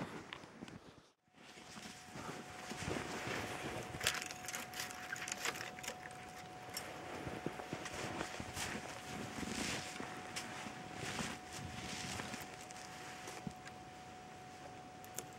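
Footsteps crunching through deep snow, irregular and soft, with scattered knocks and rustles as a person moves about and kneels. A faint steady high tone sits under it after a brief dropout about a second in.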